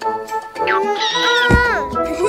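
Cartoon background music with a high, cat-like cartoon cry from the purple bunny that rises and falls, and a heavy low thud about one and a half seconds in as the bunny falls over onto its side.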